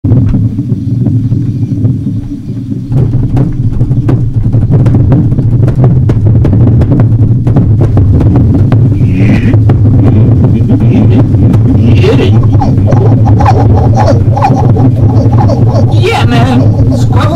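Improvised noise music: a dense, steady low drone with constant crackling clicks running through it, growing louder and fuller about three seconds in.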